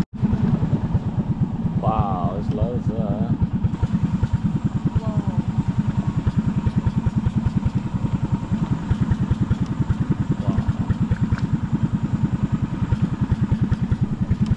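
A boat's engine running steadily with a rapid, even beat.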